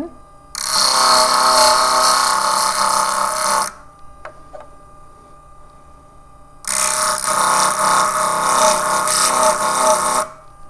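Jewel Tool grinder's spinning disc grinding fired glass enamel off a silver pendant. There are two loud stretches of gritty grinding of about three seconds each, with a ringing whine in them, as the piece is pressed to the disc. Between them the disc runs on much more quietly for about three seconds.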